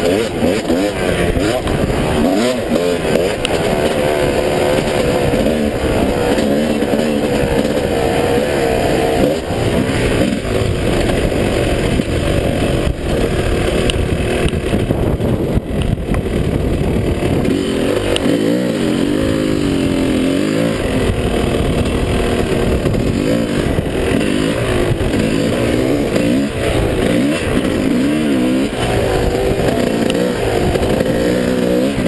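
2005 Yamaha YZ250's two-stroke single-cylinder engine under riding load, its pitch rising and falling over and over as the throttle is opened and closed.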